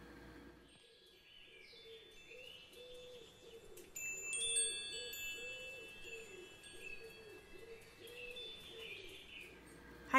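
Soft chiming ambience of wind chimes tinkling over a gentle repeating low tone, with bird-like chirps. A brighter cluster of chime tones comes in about four seconds in.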